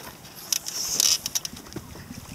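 Hiss of wind and water aboard a small sailing catamaran under way, swelling briefly about half a second in, with several sharp clicks and knocks from the boat's fittings or from the camera being handled.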